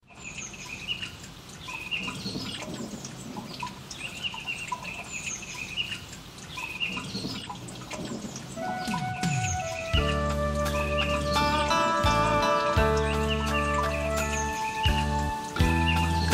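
Birdsong of repeated short, high chirps opening a song, with no instruments at first. About eight and a half seconds in, sustained instrumental notes enter, and from about ten seconds in the full band with bass is playing.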